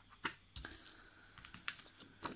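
Clear plastic stamp sheets being handled: a few faint, scattered clicks and light taps.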